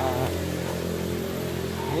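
A motor running steadily at an even pitch, with a brief voice at the start.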